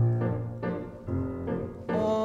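Piano music for a ballet class exercise: a chord with a strong low bass note struck at the start, followed by further chords about every half second.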